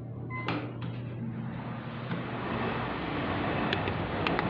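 Hitachi Urban Ace elevator's button-confirmation beep, short and electronic, as the car's floor button is pressed, followed by a click. A steady machinery noise then builds up, with a few sharp clicks near the end.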